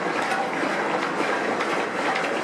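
Steady crowd murmur with no clear words, a dense even background of many people.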